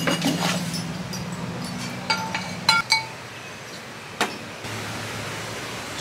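Potting soil being scooped from a galvanized metal bucket into a ceramic pot: a few sharp ringing clinks, about two to three seconds in, as hard pieces knock together, then a single knock a little after four seconds. A low steady hum runs underneath and drops lower near the end.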